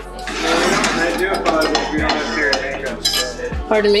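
Metal pots, pans and utensils clattering and clinking on a kitchen stovetop, with many short sharp knocks.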